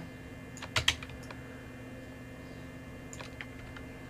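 A few computer keyboard keystrokes: a quick cluster just under a second in and a couple of fainter presses near three seconds, over a faint steady hum.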